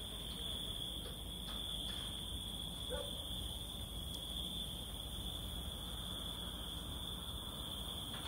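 A steady chorus of crickets at night, a continuous high-pitched trill that never breaks, over a faint low background hum.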